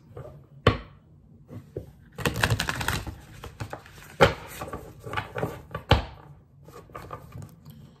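A Light Seers Tarot deck being shuffled by hand: a quick run of rapid card clicks about two seconds in, then scattered card ticks, with three sharper knocks spread through.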